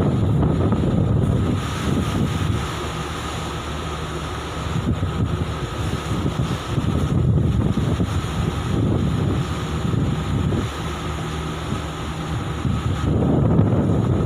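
Wind buffeting a phone's microphone, rising and falling in gusts, over a faint steady hum from a large ship's machinery.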